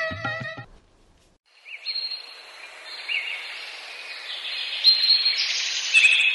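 A music bridge with singing cuts off, and after a brief silence an outdoor ambience comes in: birds chirping over a steady high hiss. It grows louder toward the end.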